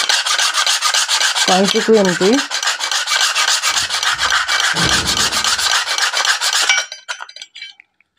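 Steel tailoring-scissors blade rubbed rapidly back and forth against sandpaper wrapped around a ladle handle to sharpen it: a fast, steady rasping scrape of many strokes a second. It stops about seven seconds in and gives way to a few lighter scrapes.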